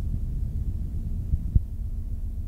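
Low, muffled rumble and hum from the end of a cassette recording, with no music playing. A single thump comes about one and a half seconds in, after which a steady low hum tone sets in.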